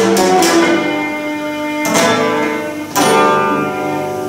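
Cretan laouto strumming full chords, with two hard strums about two and three seconds in that are left to ring: the closing chords of the tune.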